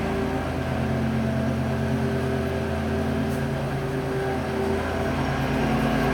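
Lawn mower engine running steadily, a continuous low drone.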